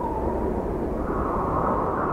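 A rumbling whoosh sound effect, a steady rushing noise with a low rumble beneath it, for the animated logo. About a second in, its hiss rises slightly in pitch.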